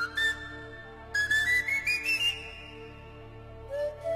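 Pan flute playing a slow melody over sustained orchestral accompaniment, each note with a breathy attack. A rising run of notes climbs to a high note that fades out, and a new, lower phrase begins near the end.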